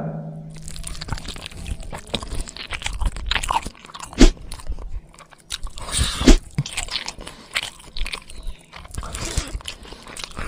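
Crunching sound effect serving as the sound of a saw cutting away growths. It is a dense run of dry, crackly crunches, with two loud, sharp crunches about four and six seconds in.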